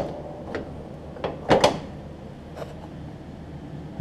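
A few scattered light knocks and clunks, the loudest about one and a half seconds in, over a low steady background hum; the mower's engine is not running.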